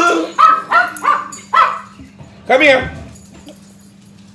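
A pet dog barking: four short barks in quick succession, then a longer bark with a bending pitch about two and a half seconds in.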